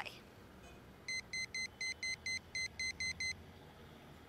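Mobile phone keypad beeping: about ten short, identical high-pitched beeps in quick, slightly uneven succession, starting about a second in, as a phone number is keyed in.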